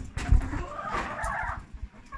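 Chickens clucking in the background, with a dull bump near the start.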